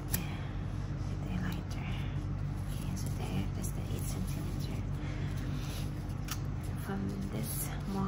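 Handling noise as grosgrain ribbon and a plastic lighter are moved about on a cutting mat, with a few short sharp clicks, over a steady low hum.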